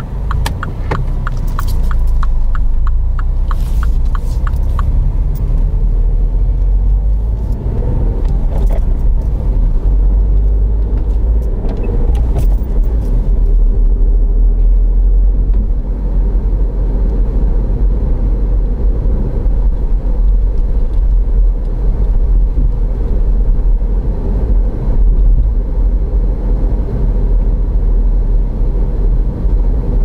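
Inside a MINI hatchback's cabin: the indicator ticking evenly for the first few seconds as the car pulls away from the kerb, then the steady low rumble of engine and road noise as it drives along.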